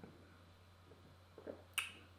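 Faint mouth and breath sounds just after a sip of beer, then one sharp click near the end.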